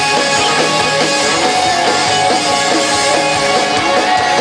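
Live rock band playing electric guitars and a drum kit through a stage PA, loud and continuous.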